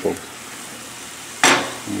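Carrots and zucchini sizzling softly in butter in a stainless steel sauté pan, with one sharp knock about one and a half seconds in, typical of the stirring utensil striking the pan.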